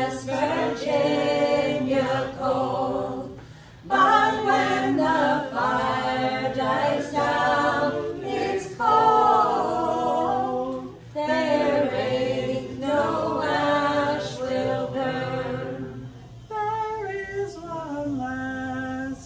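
A small mixed group of men and women singing a folk song together in harmony, in phrases broken by short pauses for breath, with a banjo and an acoustic guitar accompanying.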